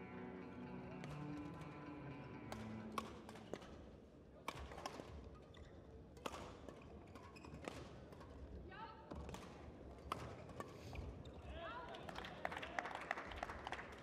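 Badminton doubles rally in a sports hall: rackets striking the shuttlecock and players' footsteps on the court, heard as a string of sharp clicks and knocks. In the first few seconds faint music plays in the hall.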